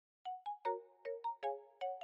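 Short intro jingle: a quick melody of struck, ringing notes, about seven in two seconds, each starting sharply and dying away, with a chord of tones in each note.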